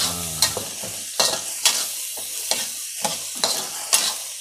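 Ranti berries and spice paste sizzling steadily in oil in a wok, with a metal spatula stirring and scraping against the pan in irregular strokes.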